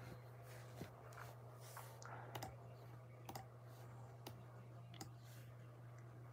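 Near silence with a low steady hum and a handful of faint, scattered clicks, roughly one a second.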